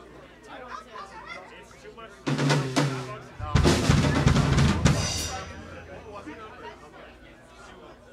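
Drum kit played in a short fill: two loud bursts of drumming about a second long each, the second heavier with bass drum, ending in a cymbal ringing out.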